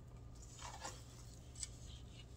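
Faint handling of risen yeast dough in a stainless steel bowl as a hand presses into it and starts lifting it out: a soft rustle about half a second in, then a single light click against the bowl.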